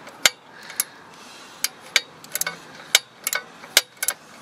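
Scattered sharp metallic clicks and taps, about ten in four seconds at irregular spacing, from hand tools being handled while working on a motorcycle engine during an oil change.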